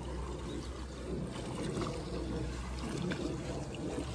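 Water sloshing around a person's legs as he wades step by step through a shallow concrete water-treading (Kneipp) basin, with the basin's inflow spout pouring and trickling into it. A steady low rumble runs underneath.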